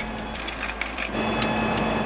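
Fire engine running, a steady mechanical noise with a low rumble and a steady hum that joins about a second in, with a few faint clicks as a hose coupling is fitted to the pump intake.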